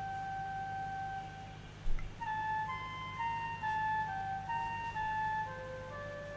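Background film score: a slow, flute-like melody of held notes that step from pitch to pitch over a steady low drone, with a short knock just before two seconds in.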